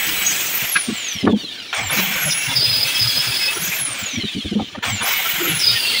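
Handheld electric marble-cutter-type circular saw grinding across the face of a wooden plank, its high motor whine repeatedly sagging and climbing back in pitch as the blade bites and frees, with a squeal.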